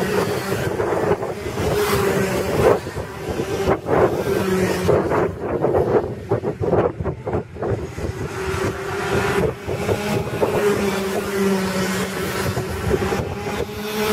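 Racing kart engines running as karts lap the circuit, their note wavering up and down, with wind buffeting the microphone.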